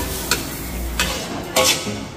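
Metal spatula scraping and clanking against a large metal wok while minced pork and basil are stir-fried, over a steady sizzle. Three sharp scrapes, the loudest about a second and a half in.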